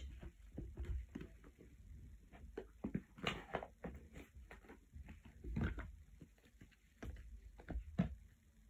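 Irregular soft taps and rustles of things being handled close to the microphone, with a few louder knocks along the way.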